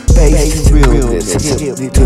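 Hip hop beat with heavy bass and kick drum, with rapping over it; the bass drops out briefly near the end, then the beat comes back in.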